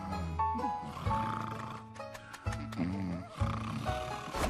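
Soft music with held notes over low, drawn-out snoring from sleeping sheep, several snores about a second long each with short breaks between.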